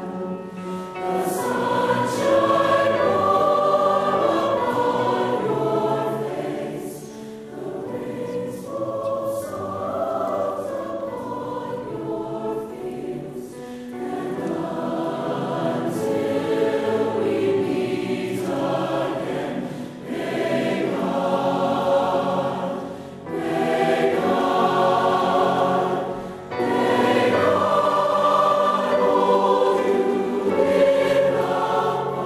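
Mixed choir of male and female voices singing in long held phrases, with brief breaks between phrases.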